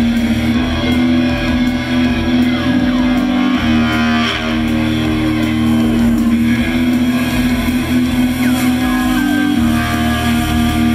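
Live rock band playing: electric guitar and bass guitar over a steady, held low note.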